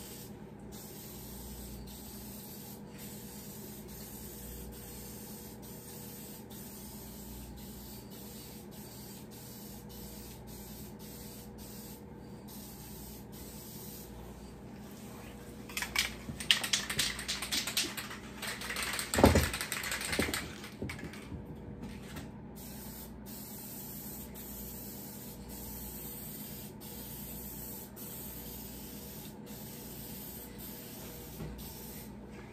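Aerosol rattle can of single-stage paint hissing in short passes with brief breaks between them, as a light coat goes onto a truck fender. A few seconds past the middle, loud fabric rustling and a thump as a jacket brushes and knocks against the recording phone.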